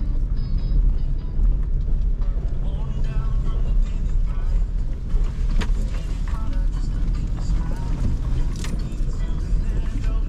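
Truck interior noise while driving slowly on a rough dirt road: a steady low rumble from the engine and tyres, with a couple of sharp knocks from bumps about halfway through and near the end.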